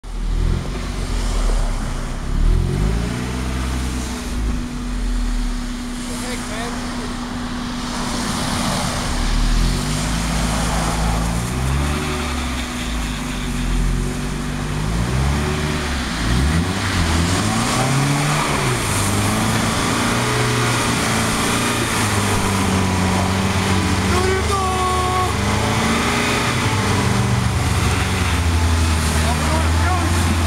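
Mazda Miata's four-cylinder engine revving up and down over and over as the car struggles for grip on summer tires in snow. The pitch settles steadier in the last several seconds.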